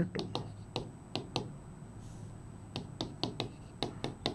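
Marker pen tip ticking against a whiteboard while writing: about ten short, sharp taps, a group in the first second and a half and another from about three seconds in, with a pause between.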